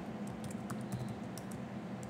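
Typing on a computer keyboard: a handful of light, irregularly spaced keystrokes over a faint steady hum.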